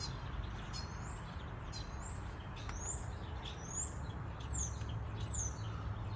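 A songbird calling: a series of short, high chirps, about one every three-quarters of a second, the later notes falling in pitch. A steady low rumble runs beneath.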